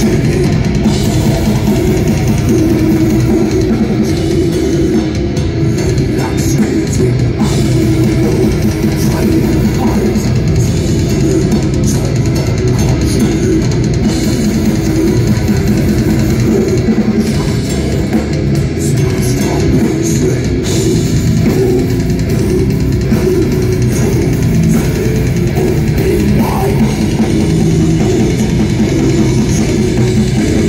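Death metal band playing live: distorted electric guitars and a drum kit at a steady, loud level, heard from within the crowd.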